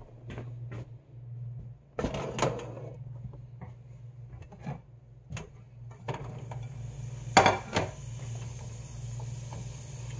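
Scattered knocks and clatter of a ceramic plate and onion slices against a frying pan, loudest as a quick pair of clacks about three-quarters of the way through, over a steady low hum.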